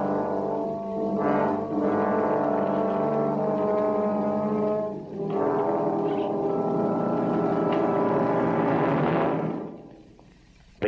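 Orchestral background score of sustained brass chords, shifting chord twice, then fading out near the end.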